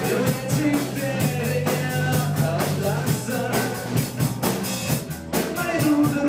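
Live rock band playing: drum kit keeping a steady beat under guitar and a singing voice.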